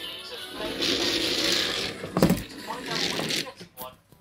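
Small electric motor of a battery-powered Thomas the Tank Engine toy train whirring as it runs along a tabletop, with a thump a little after two seconds and a second, shorter whir after it.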